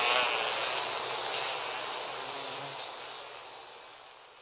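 Outro of a dubstep track, with no beat or bass: a hissing noise wash swells briefly at the start and then fades out steadily.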